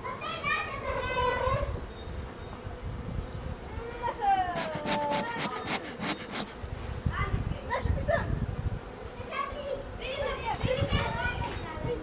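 Honey bees buzzing around an opened hive, with children's voices and shouts in the background.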